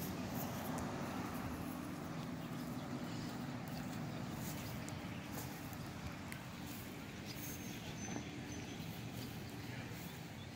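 Steady low background rumble, even throughout, with a few faint clicks.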